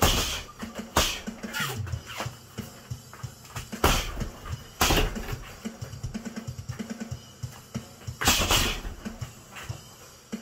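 Boxing gloves striking a hanging teardrop punching bag: a handful of hard punches at irregular intervals, the loudest a double hit near the end. Background music with a steady beat plays under them.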